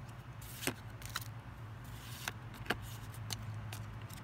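Pokémon trading cards being flicked through by hand: several light clicks of card against card, about one every half second, over a steady low hum.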